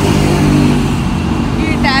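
Road traffic close by: a motor vehicle's engine running as a steady low hum that sinks slightly in pitch through the middle.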